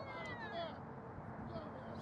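A distant, high-pitched call from a person's voice, sliding down in pitch over about half a second, with a shorter call near the end, over steady outdoor field noise.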